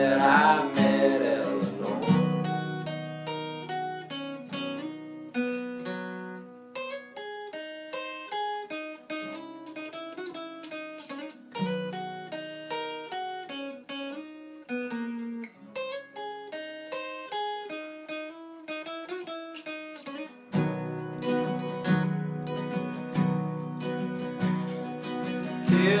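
Acoustic guitar instrumental break. A held sung note dies away in the first second, then the guitar picks out a melody in single notes. About twenty seconds in, it returns to full chords.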